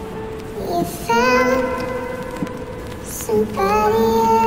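A slow, sad song with a high sung vocal holding long, slightly wavering notes; one phrase begins about a second in and another near the end.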